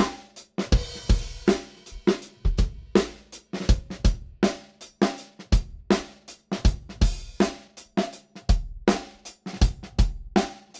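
Recorded drum kit track playing back: kick, snare, hi-hat and cymbals in a steady beat of about two hits a second, heard through a narrow EQ boost that is being swept to find resonances in the drums.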